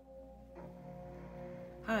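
Soft background music of long held notes, with a lower note coming in about halfway through.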